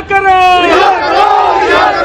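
A crowd of protesters shouting slogans together, loud, with long drawn-out held calls.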